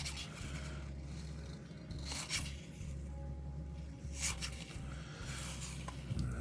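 Cardboard trading cards sliding against each other as they are thumbed through one at a time: a few short scraping rustles, about every two seconds, over a low steady hum.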